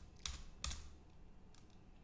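Two computer keyboard keystrokes in the first second, then faint room tone.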